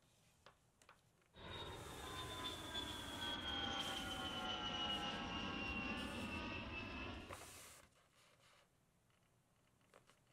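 Jet airliner engine noise: a deep rumble under a whine that slowly falls in pitch, starting suddenly about a second in and fading out after about six seconds.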